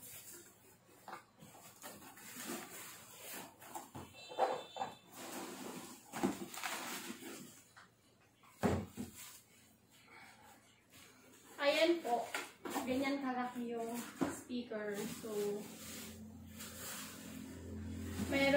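Cardboard box and plastic bubble wrap being handled as a boxed speaker is pulled out: scattered rustles, scrapes and knocks, with one sharper thump about halfway through. A woman's voice speaks for a few seconds in the last third.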